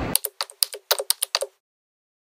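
Typing sound effect: a quick, uneven run of about a dozen keyboard clicks, thin with no low end. It stops after about a second and a half and gives way to dead silence.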